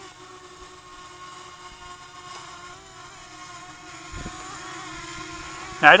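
Walkera Runner 250 quadcopter's motors and propellers whining steadily at a distance while it flies low in to land. The pitch wavers slightly as it is pushed around by the wind, with a brief low bump about four seconds in.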